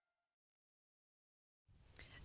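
Near silence: the last faint trace of faded-out background music dies away, then dead silence, with faint background noise coming back near the end.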